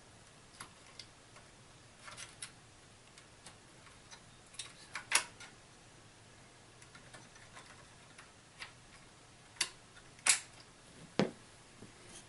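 Scattered small clicks and taps of hard plastic and metal as memory modules and their retaining clips are handled inside an opened all-in-one PC. Sharper snaps come about five seconds in and twice near the end, the last followed by a duller knock.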